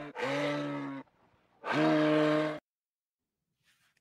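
Two long, low, moose-style lowing calls, each about a second and held at a steady pitch, with a short gap between; the second cuts off abruptly into silence.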